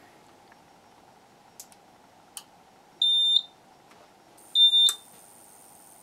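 Eaton Powerware PW5115 500i UPS being switched on: a couple of small clicks, then two short high-pitched beeps from its buzzer about a second and a half apart, with a sharp click at the second beep. A faint high whine sets in just before the second beep as the unit starts running.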